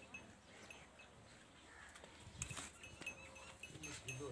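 Quiet farmyard with a short animal sound, from livestock such as the buffalo, about two and a half seconds in. After it comes a run of short high-pitched chirps, repeating a few times a second.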